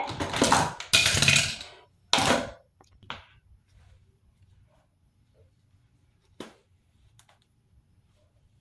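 Close rustling and handling noise from hands moving right by the phone and the items on the counter for about two and a half seconds, then a few faint clicks as hair is gathered up.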